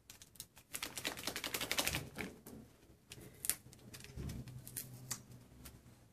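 A small paper packet of dry yeast being handled and torn open: a dense run of crinkling clicks for about a second, then scattered clicks and taps.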